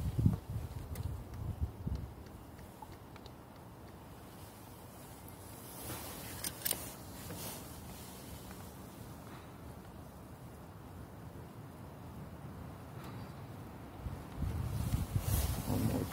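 Mostly quiet outdoor background with low wind rumble on the microphone in the first two seconds and again near the end, and a couple of light knocks about six to seven seconds in.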